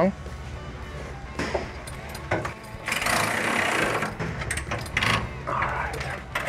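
An exhaust pipe clamp being tightened down with a power tool, which runs in one burst of about a second near the middle. A few metal knocks come before and after it.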